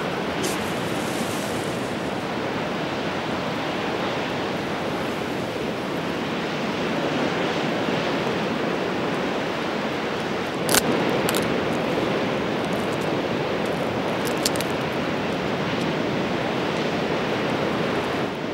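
A steady rushing outdoor noise with no pitch to it, with a few brief sharp clicks about eleven and fourteen seconds in.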